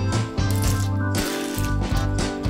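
Cockle shells clinking against one another and against a metal ladle as they are scooped out of the cooking water, a run of short clinks over background music.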